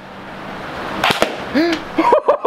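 Airsoft rifle shots: a quick cluster of two or three sharp cracks about a second in and one more near the end, over a hiss that grows louder.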